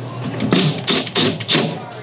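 Handling noise: about four sharp clicks and knocks in quick succession near the middle, as hands work at the thermostat housing and pick up tools.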